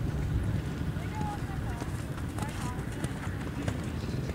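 Hoofbeats of horses trotting on soft sand arena footing, with voices in the background.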